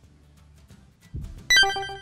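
A bright chime sound effect struck once about a second and a half in, ringing and fading, over faint background music. It is an edited-in transition sound.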